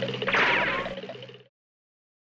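Cartoon dash-away sound effect: a whooshing zip that falls in pitch, over a rapid patter. It cuts off to silence about one and a half seconds in.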